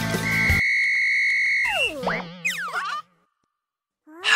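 Cartoon sound effects: a long, steady whistle blast, followed by falling, warbling pitch glides. Background music stops about half a second in.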